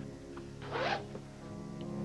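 A short zipping rasp about a second in, over soft background score music that swells near the end.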